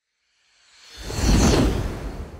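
Whoosh sound effect with a deep rumble beneath it. It swells up from about half a second in, peaks midway and is fading away at the end.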